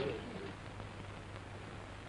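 Steady low hum with faint hiss from an old film soundtrack, after the tail end of a man's word at the very start.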